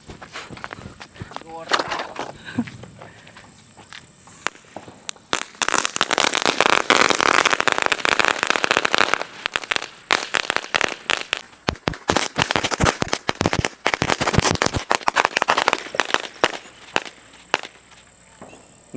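A Diwali village-made ground firework, a taped cardboard disc, spraying sparks with a dense, rapid crackling. It starts about five seconds in and goes on until shortly before the end, with a couple of brief pauses.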